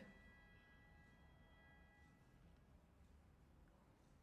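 Near silence, with a faint held high tone that fades out over the first two seconds or so.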